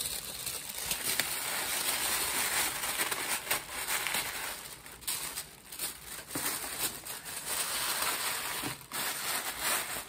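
Hands handling a plastic basket packed with plastic shopping bags: continuous crinkling and rustling with many small clicks, easing off briefly a few times.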